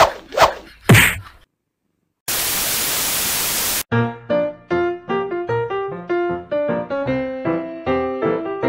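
Three sudden thuds in the first second, each sliding down in pitch, then a short burst of even static-like hiss. From about halfway through, piano music plays light, evenly paced notes.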